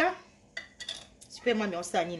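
A metal spoon clinking and scraping against a glass jar of chilli sauce, a few sharp clicks in the first half. A voice is heard briefly near the end.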